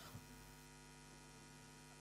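Near silence, with a faint steady electrical mains hum.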